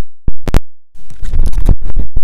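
A microphone being dropped: several sharp, loud knocks in the first half-second as it hits and clatters. After a brief gap comes about a second of rough rumbling and rubbing noise from the microphone being handled.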